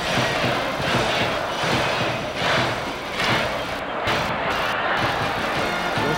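Stadium crowd cheering at a baseball game, swelling and falling about once a second, mixed with music.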